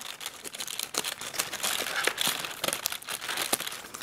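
Chocolate advent calendar being opened by hand: cardboard doors tearing and the foil inside crinkling, an irregular run of small crackles and clicks.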